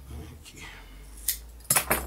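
Small metal scissors set down on a wooden workbench: a sharp click, then a short metallic clatter near the end.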